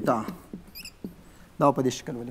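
A brief high-pitched squeak of a dry-erase marker dragged across a whiteboard, a little under a second in, between stretches of a man's speech.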